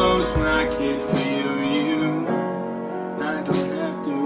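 Background music: a melody moving over held chords.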